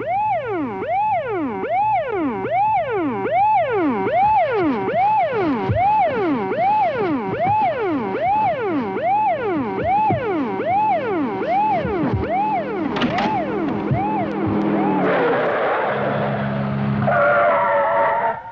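Police car siren wailing in quick rising and falling sweeps, about four every three seconds. From about thirteen seconds in, a screech of brakes or tyres joins it as the car pulls up.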